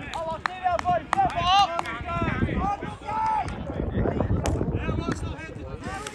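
Footballers shouting on the pitch: several raised, drawn-out calls in the first few seconds and again near the end, reacting to a missed shot at goal. Short sharp knocks are scattered between the calls.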